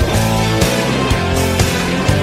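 A late-1980s AOR rock song, the band playing on steadily in a gap between sung lines.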